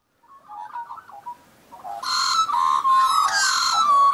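Australian magpies carolling: a mix of fluting, warbling phrases, faint at first and loud from about halfway through.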